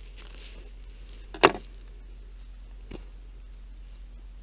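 Knife and hands working on a possum carcass on a board: quiet cutting and pulling at tough skin and meat, with one sharp knock about a second and a half in and a fainter one about three seconds in.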